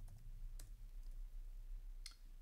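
Faint computer clicks over a low steady hum, the clearest click about half a second in.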